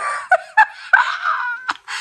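A woman's high, breathy wailing voice: a few short cries, then a longer one that falls slightly in pitch and breaks off near the end.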